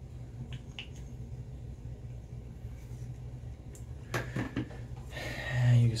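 A few light clicks and taps from handling a shaving cream tube and shaving bowl, over a steady low hum in a small room; a louder rustle near the end as the bowl is lifted.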